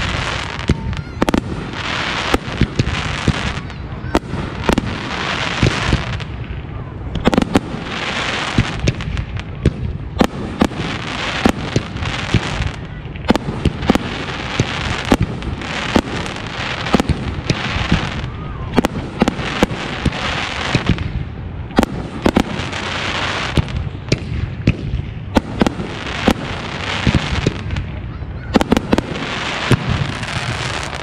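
Aerial firework display shells launching and bursting in rapid succession: many sharp bangs, several close together at times, between stretches of hissing noise.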